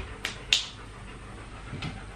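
A dog panting in a few quick breaths, with a short sharp burst about half a second in, then quieter.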